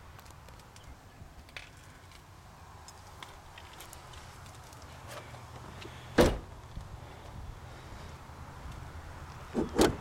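A car door on a 2008 Pontiac Solstice GXP roadster shut once with a single solid thump about six seconds in, followed by a couple of lighter knocks near the end.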